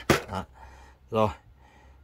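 A man's short spoken words, with faint room hush between them. No music is playing from the system.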